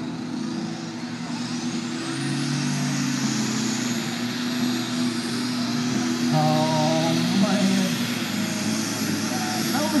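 Cummins diesel engine of a pulling tractor running hard at full power down the track, heard from a distance, getting gradually louder, with a high whine that climbs over the first few seconds and then holds.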